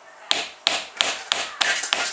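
Small hammer tapping a 5 mm wooden dowel axle through a tight-fitting MDF wheel that rests over a gap between two wooden blocks, driving the wheel further along the axle. A series of sharp light taps, about three a second at first and coming quicker near the end.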